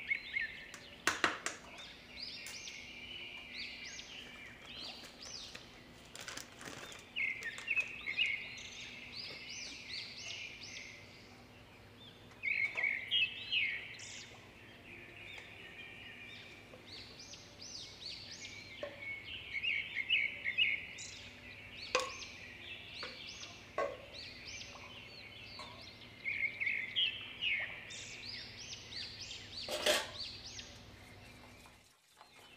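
Small birds chirping in repeated bursts of rapid high notes, with a few sharp clinks of a spoon or spatula against metal cookware.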